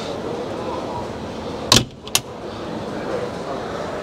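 Steady hall ambience of an indoor boat show, a murmur of distant voices, broken by two sharp knocks close together a little under two seconds in.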